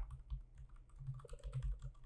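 Computer keyboard typing: a quick, irregular run of light key clicks.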